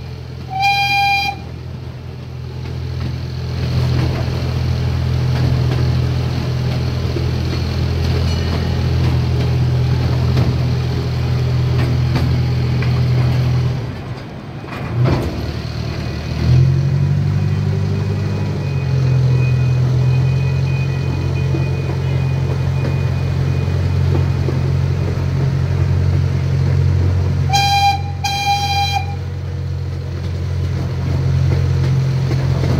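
Chance C.P. Huntington miniature train's locomotive engine running steadily, heard from the passenger cars behind it, with one short horn toot about a second in and two short toots near the end. About halfway the engine note briefly dips, then comes back stronger at a different pitch.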